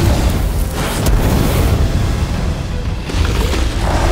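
Animated sound effects of a magical fire blast: a rushing surge of flame with deep booms, a fresh surge starting about three seconds in, mixed with the background score.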